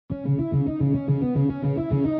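Guitar music: a fast, even run of plucked notes, about seven a second, starting abruptly.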